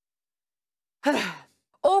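A woman sighs once, about a second in: a short, breathy exhale falling in pitch.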